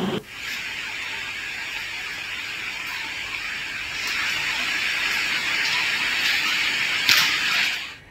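A steady hiss with no speech, growing a little louder about four seconds in, with a brief louder burst a little after seven seconds.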